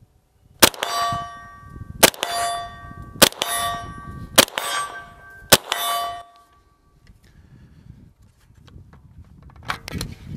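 Five single shots from a 9mm CZ Scorpion EVO 3 S1 carbine, a little over a second apart. Each shot is followed by the ringing clang of an AR-500 steel target hit at about 50 yards.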